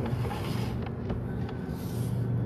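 A steady low mechanical hum, like an engine running, with a few faint clicks over it.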